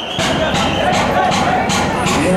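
Music with a regular beat, a few strokes a second, over crowd voices.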